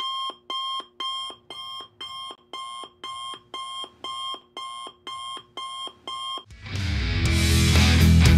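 Electronic alarm-clock beeping used as a sound effect: short, evenly spaced beeps, about two a second. Near the end it gives way to a rising swell into loud rock music.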